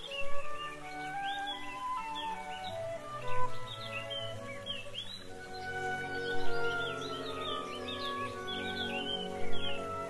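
Quiet background music of long held tones, with birds chirping throughout as a nature sound effect.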